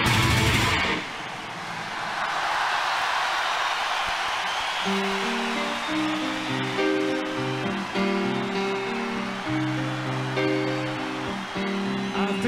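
Live rock concert recording: a loud full-band song ends about a second in, giving way to a cheering stadium crowd. From about five seconds, slow sustained piano chords play over the crowd, leading into the next song.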